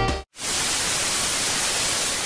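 Background music cuts off, and after a brief gap a steady hiss of TV static sets in: a white-noise static sound effect.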